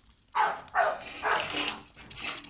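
A dog making three short, breathy sounds in quick succession.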